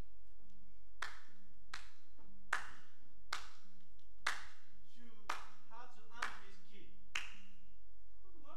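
A person clapping hands sharply about eight times, roughly once a second, each clap ringing briefly in the hall.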